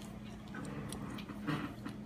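Light clicks and taps of a plastic Lego minifigure being picked up and handled by fingers. There are several small clicks in the second half, over a steady low hum.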